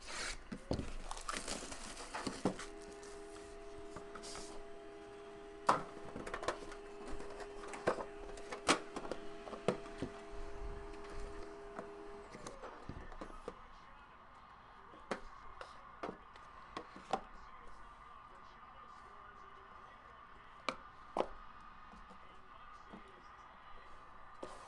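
Quiet handling sounds of a sealed cardboard trading-card box being opened: a knife cutting the tape seals, then scattered taps, clicks and scrapes of cardboard and the metal tin inside. A faint steady hum of several tones runs underneath and stops about twelve seconds in.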